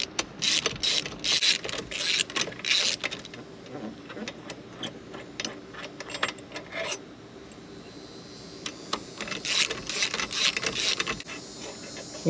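Socket ratchet clicking in quick back-and-forth strokes, backing out the 12 mm exhaust manifold bolts. A run of strokes lasts about three seconds, then it goes quieter, and another run comes near the end.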